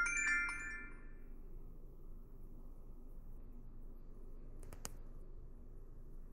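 Short electronic chime of a few bright notes from Tagry X08 wireless earbuds, fading out within about a second and a half: the buds' prompt tone as they go into pairing mode. A sharp click follows near the end.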